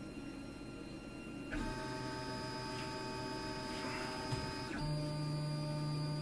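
LulzBot TAZ 6 3D printer's stepper motors whining in steady tones as the extruder retracts the filament to keep the nozzle clean. The pitch steps up about a second and a half in and shifts again near the end.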